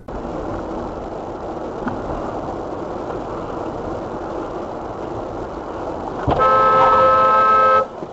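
Steady road and engine noise heard from inside a moving car, then a car horn sounds, held for about a second and a half near the end.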